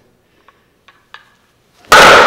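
A baseball bat swung into a hand-held wooden breaking board: one very loud crack near the end as the board snaps, ringing on briefly afterward.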